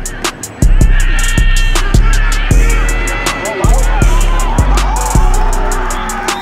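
Background music with a steady, heavy drum beat and deep sustained bass.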